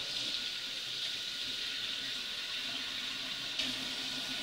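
Kitchen faucet running steadily into a stainless-steel sink, the stream splashing over an object held under it to rinse it.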